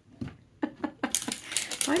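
A small plastic toy doll falling over onto a hard tabletop: a few light clicks, then a quick clatter about a second in.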